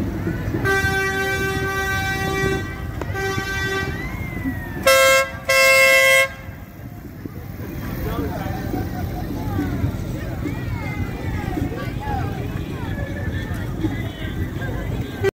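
Vehicle horns honking: a long horn note and a shorter one in the first four seconds, then two louder, higher-pitched blasts about five seconds in. Voices of onlookers follow, over a steady low rumble of passing vehicles.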